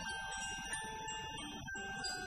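Marching band playing, long held notes that move to a new chord near the end.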